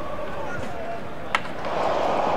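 A single sharp clack of a skateboard hitting the paving, a little past halfway, as the skater comes off it. It sounds over faint chatter from onlookers, which swells into a murmur near the end.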